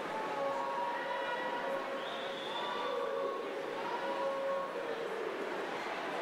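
Spectators yelling long, drawn-out cheers in an echoing indoor pool hall, several voices overlapping, some calls sliding down in pitch, over a steady wash of crowd noise.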